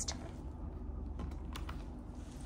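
A few light clicks and taps as a menu booklet's pages are handled and flipped on a glass tabletop, over a steady low hum.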